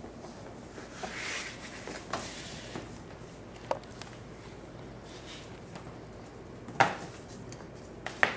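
A Cavachon puppy scuffling about on a tile floor: soft rustling and a few light knocks and taps, with one sharper knock about seven seconds in.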